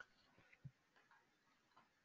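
Near silence with a few faint, irregular clicks and one soft knock about two-thirds of a second in.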